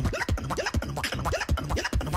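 Beatboxer performing into a handheld microphone: a fast beat of kick drums and clicks, about four a second, with short rising vocal scratch sounds imitating turntable scratching.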